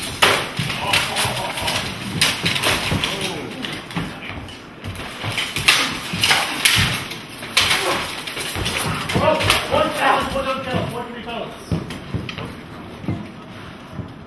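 Steel swords striking blades and armour in a rapid, irregular run of sharp clashes and knocks, with mail and plate armour clattering as the two armoured fighters close and grapple. Voices call out about nine to eleven seconds in.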